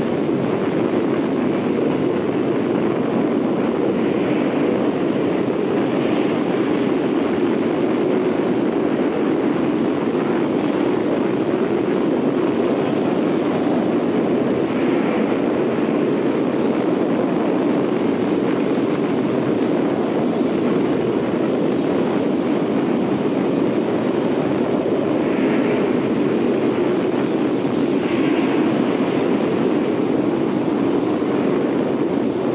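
Tornado wind sound effect: a steady, dense rushing noise with its weight low in the middle and a few faint brighter swells every several seconds.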